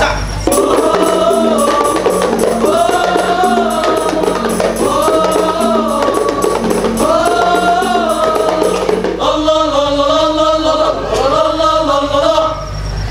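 A male qasidah group sings in chorus over steadily beaten rebana frame drums. A short arching vocal phrase repeats several times, and a different phrase begins near the end.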